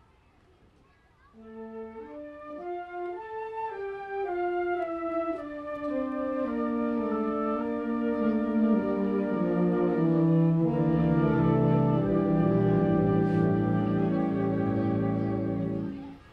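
Concert band playing the slow introduction to a gospel spiritual: after about a second of near silence, a melody enters in held notes, more wind and brass parts join, and it swells to a full sustained chord that breaks off just at the end.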